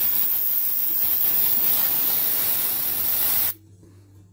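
Aerosol can of party string spraying in one continuous hiss, cutting off suddenly about three and a half seconds in.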